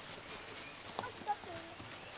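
Faint voices of a small group in a lull between speech, with one sharp click about a second in.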